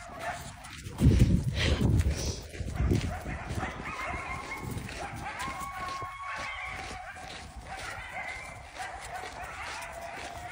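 A chorus of distant coyotes howling, several long held notes at different pitches overlapping, with yips. Loud low rumble about a second in, lasting around two seconds.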